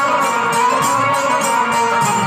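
Live folk stage music: a naal barrel drum playing a quick, steady beat of about four to five strokes a second under a sustained melody.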